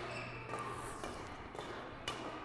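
Quiet badminton-hall background: a steady low hum with a few faint taps.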